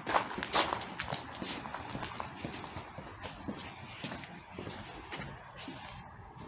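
Footsteps on stone patio paving slabs, about two steps a second.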